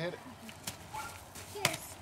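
A child's stick striking a hanging piñata: a light knock, then one sharp whack about a second and a half in.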